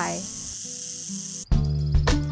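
Northern Pacific rattlesnake buzzing its tail rattle, a steady high hiss that cuts off suddenly about three-quarters of the way through: the rattlesnake's defensive warning. Music with a beat then starts.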